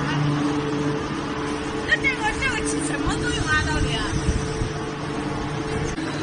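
Soap-making machinery running with a steady low hum, with people talking briefly in the middle.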